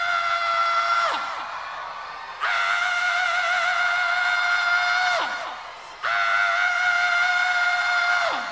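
A male rock singer holding a high, screamed note with vibrato three times in a row, each held for two to three seconds and ending in a quick downward slide in pitch. No band is heard under the voice.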